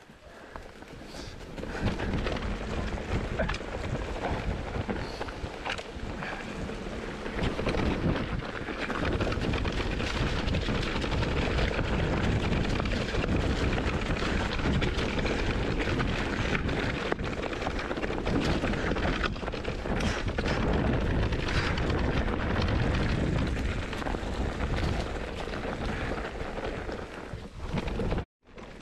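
Wind buffeting the microphone and the mountain bike's tyres and frame rumbling and rattling over a rough dirt trail at speed, building up about two seconds in and staying loud.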